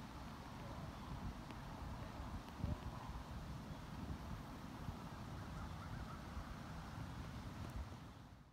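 Wind buffeting the microphone, an uneven low rumble that gusts once, sharply, about a third of the way in.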